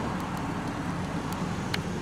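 Pickup truck's engine running close by as the truck creeps toward the camera: a steady noise with a few faint ticks.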